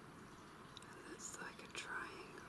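Faint whispering by a person close to the microphone, starting about a second in.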